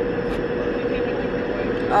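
Steady travel noise of a moving vehicle heard from inside, an even rush with a constant hum running under it.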